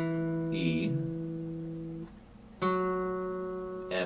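Acoustic guitar playing two single notes of the G major scale, E and then F sharp, each plucked once and left to ring for about two seconds. The second note comes about two and a half seconds after the first.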